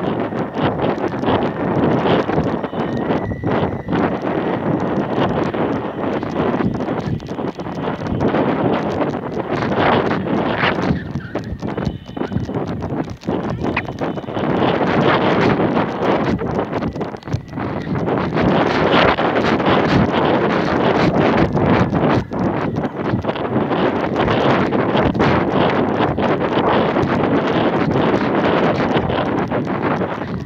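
Wind buffeting the microphone of a camera carried high on a kite, in gusts that swell and ease, with rapid, uneven knocking and rattling throughout.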